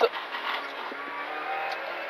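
Renault Clio Rally4's turbocharged four-cylinder engine running at speed on a rally stage, heard from inside the cockpit over steady road noise; its engine note grows stronger about halfway through.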